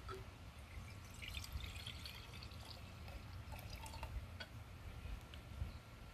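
Water being poured from a glass jug into a flower vase, faint, starting about a second in and dying away after about four and a half seconds.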